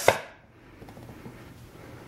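A single sharp click as a small magnet block is set down onto a wooden-framed chalk slate, followed by faint room tone.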